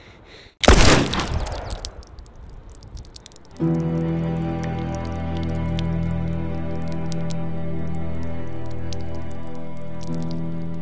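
A single revolver gunshot about half a second in, the loudest sound here, dying away over a second or so. A few seconds later slow music with long held chords comes in and carries on.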